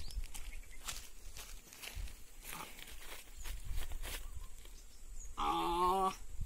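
Scattered light knocks and rustles as a person climbs into a rope-slung wooden swing chair, over a low rumble. A brief wavering vocal sound comes near the end.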